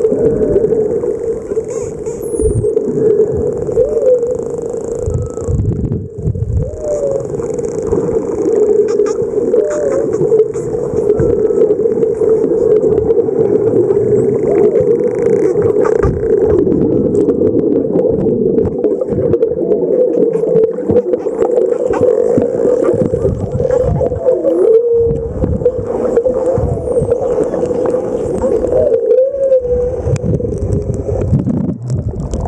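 Underwater sound among a pod of spinner dolphins: a loud steady drone with short swooping calls every two to three seconds, and a few faint high falling whistles near the start and end.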